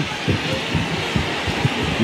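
Arena crowd noise: a large audience cheering and shouting as a steady din.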